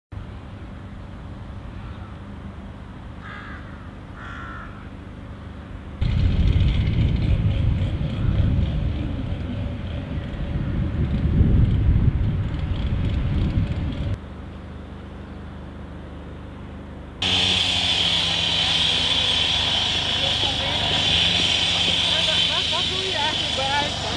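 Outdoor ambience across several shots. Wind rumbles on the microphone from about six seconds in until about fourteen. From about seventeen seconds a busier, louder mix sets in, with voices in it. A couple of short calls come near the start.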